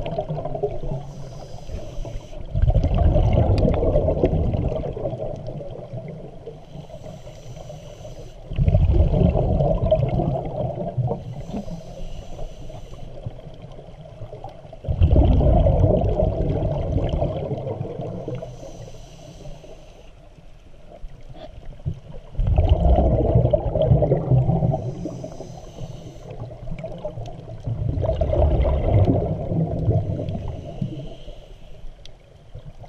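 Scuba regulator breathing heard underwater: a loud bubbling rumble with each exhalation, about every six seconds and fading over a couple of seconds, with a fainter hiss of inhalation between breaths.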